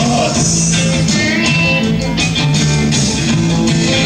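Live rock band playing, with electric guitars, bass guitar and drums.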